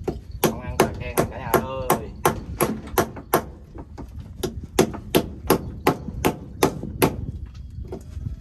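Hand tool striking oyster shells against a wooden plank to crack them open: quick, sharp knocks about three a second, stopping shortly before the end.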